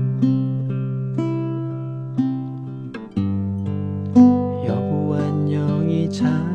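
Antonio Lorca 1015 nylon-string classical guitar playing a song accompaniment. Picked and strummed chords come about twice a second over ringing bass notes, with a chord change about three seconds in.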